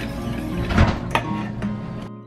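Wire whisk stirring cream in a stainless steel saucepan, scraping and clinking against the pan with a couple of sharper knocks near the middle, over background music.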